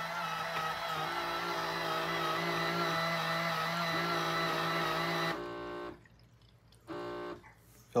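Baby Brezza formula maker running after start is pressed, dispensing and mixing warm water and powdered formula into a bottle with a steady whirring hum. It stops about five and a half seconds in, with a short second burst about seven seconds in.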